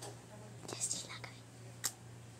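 A few whispered words, breathy and unvoiced, about a second in, with a sharp click near the end over a steady low hum.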